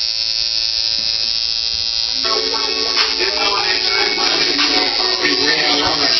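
Electric tattoo machine buzzing steadily with one unchanging tone. About two seconds in, music starts and covers it.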